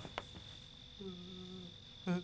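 Faint night ambience of crickets: a steady, unbroken high-pitched note. About a second in, a faint short hum from a voice.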